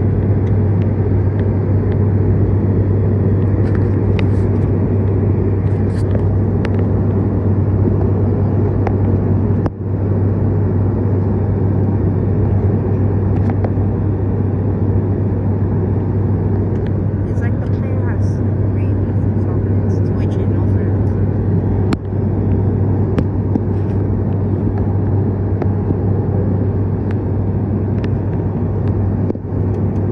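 Steady turboprop drone inside the cabin of an ATR 72 in flight: its Pratt & Whitney PW127 engines and propellers running, with a strong low hum under the cabin noise.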